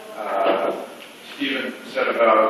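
Speech only: a person talking in two short phrases.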